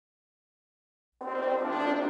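Silence, then a little over a second in, brass instruments come in suddenly with a sustained, steady tone.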